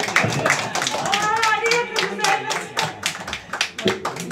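A small audience applauding with voices calling out over the clapping as a song ends; the clapping thins out near the end.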